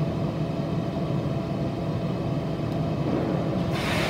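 Steady low machine hum with a few faint steady tones in it, and a brief burst of hiss near the end.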